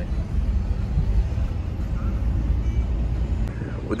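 Car engine and tyre rumble heard from inside the cabin while driving in city traffic, a steady low drone.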